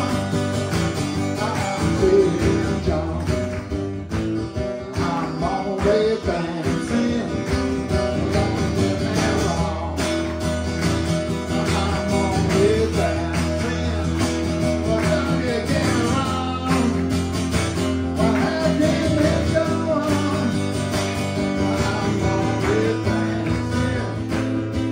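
Steel-string acoustic guitar strummed steadily through a PA in a live solo rock performance, with a man singing into the microphone at times.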